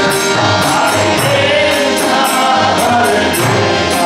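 Harinam kirtan singing to harmonium chords, voices in a choir-like chorus, with a steady metallic percussion beat of about three strokes a second.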